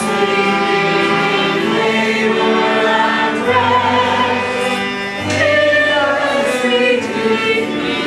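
Choir singing a sacred piece in sustained, overlapping chords, with a deep low note sounding twice near the middle.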